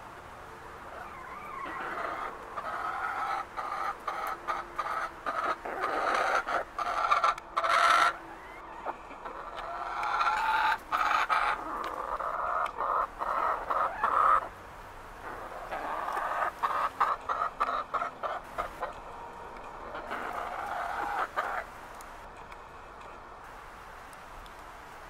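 Chickens clucking and calling in a long run of short calls, with a short lull a little past halfway.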